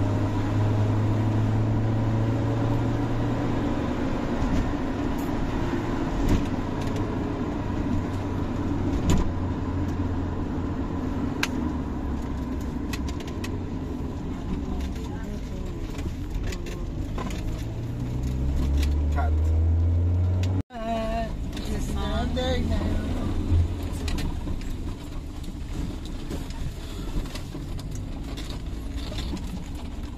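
Car engine and road noise heard from inside the cabin while driving, with small rattles and knocks from the car. The engine note climbs as the car speeds up a little past halfway, and the sound breaks off abruptly for an instant just after that.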